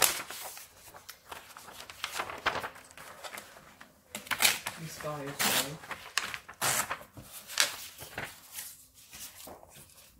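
Sheets of vellum and paper rustling as they are handled and shifted on a desk, in a string of short rustles every second or so.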